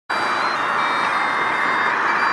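Steady road-traffic noise on a city bridge: an even hiss of passing vehicles, with a few faint steady high tones in it, that cuts in abruptly at the very start.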